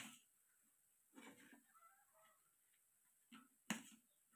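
Near silence broken by a few soft mouth clicks and smacks of someone eating by hand; a sharper click near the end is the loudest.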